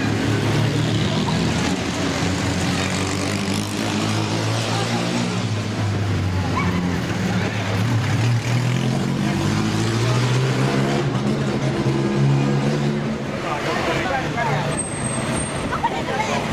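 Vintage pre-war racing cars' engines running at low revs as the cars crawl past in slow traffic, a steady low engine note that drifts gently up and down in pitch. A crowd is chattering.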